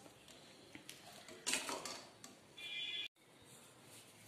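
Faint sounds of a steel ladle stirring cauliflower florets in a steel pan of water. There is a brief scrape or splash about one and a half seconds in, then a short high-pitched tone that cuts off abruptly near the end.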